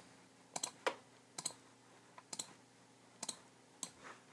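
Computer mouse button clicking as areas of an image are filled one by one: a series of short sharp clicks every half second to a second, several in quick pairs.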